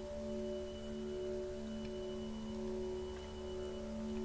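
Soft background music: a held chord of steady, sustained tones with no rhythm, like a pad or drone.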